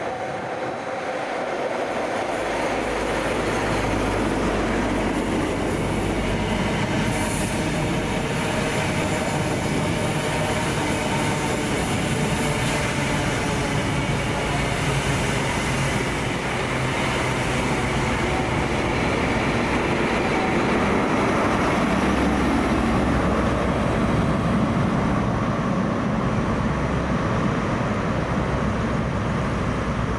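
A Class 43 HST (InterCity 125) passing at slow speed into a station: the diesel power cars run steadily over continuous wheel-on-rail noise.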